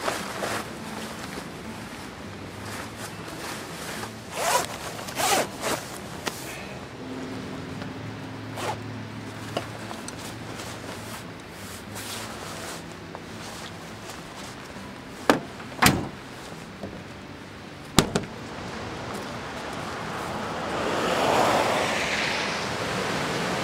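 Rain gear rustling and zippers being pulled as rain pants, a rain jacket and a backpack are put on, with a few sharp clicks along the way. A rush of running water grows louder near the end.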